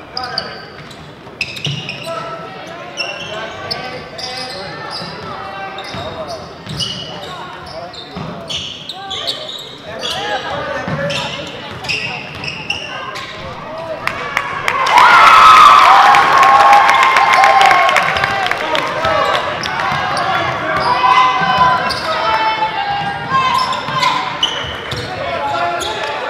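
Basketball dribbles and bounces on a hardwood gym floor among echoing voices of players and spectators. About 15 s in, a sudden loud burst of shouting voices from the crowd rises over the play and slowly fades.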